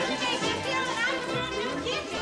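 Film score music with high children's voices chattering and calling over it, like children at play.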